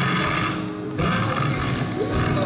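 Live rock band music from a concert. The lead singer's voice drops out briefly while the band plays on, with a short dip in level just before a second in.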